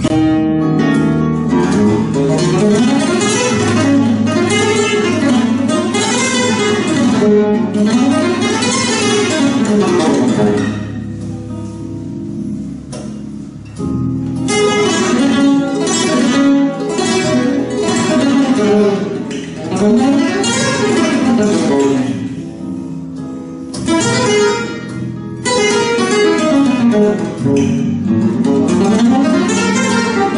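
Andalusian Simplicio flamenco guitar played solo: fast arpeggio runs climbing and falling in pitch, with softer, quieter passages about eleven and twenty-two seconds in.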